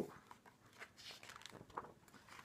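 A few faint rustles and light ticks of a picture book's paper page being turned by hand.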